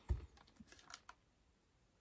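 A low knock, then a few faint light clicks over the next second, as a wooden lazy susan top is tilted and shifted by hand on its turntable base.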